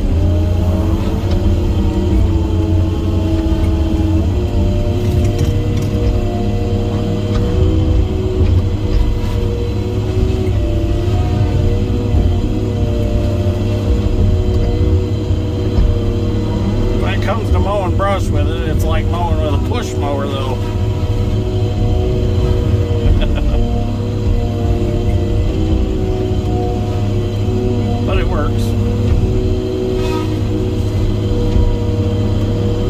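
Feller buncher's diesel engine and hydraulics running steadily under load, heard from inside the cab, while its disc saw head cuts through brush. Around two-thirds of the way through, a brief warbling higher sound rises over the engine.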